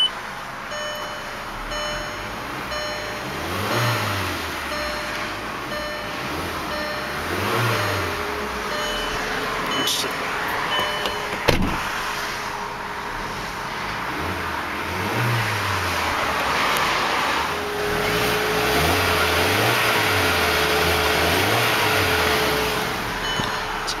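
Volkswagen Passat's 1.8-litre turbocharged four-cylinder engine running, revved up and back down several times, heard from inside the cabin.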